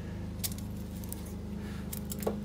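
Two faint, light clicks of a very thin shim being handled and slipped into the dovetail under a lathe headstock, over a steady low hum.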